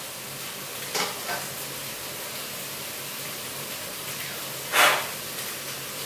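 Food sizzling steadily in a frying pan, with two brief louder noises from stirring, a small one about a second in and a stronger one near the end.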